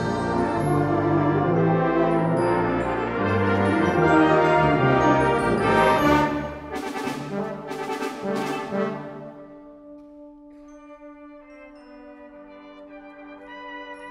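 Brass band with percussion playing a loud full-band passage, with three crashes about seven to nine seconds in, then dropping to soft held chords.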